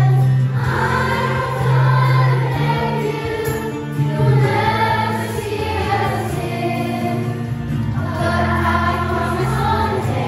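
A large group of children singing together from song sheets, over accompaniment holding steady low notes that change every couple of seconds.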